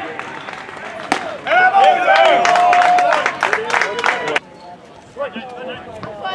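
A baseball pops into a catcher's mitt about a second in. Then several players shout and clap from the bench for about three seconds, one voice holding a long call, before it drops back to quieter chatter.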